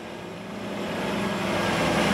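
Semi-truck milk tanker driving along a gravel farm lane, its diesel engine drone growing steadily louder as it approaches.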